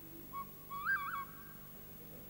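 A small blue plastic flute played briefly: one short note, then, about a second in, a quick figure that steps up to a higher note and back down twice.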